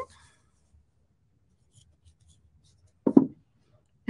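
Mostly near silence with a few faint light ticks as baker's twine is handled, then one short, loud sound about three seconds in.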